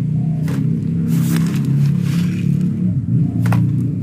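A mason's trowel scooping fine sieved sand and tipping it into a bucket, a few short scrapes and pours, over a steady low rumble like a running engine.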